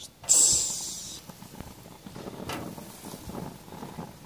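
Hot dogs sizzling as they go onto the hot grate of a propane gas grill: a sudden loud hiss about a quarter second in that fades over the next second into a fainter sizzle.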